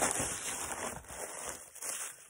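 Plastic poly mailer rustling and crinkling as a tightly packed, tissue-wrapped package is pulled out of it, dying away toward the end.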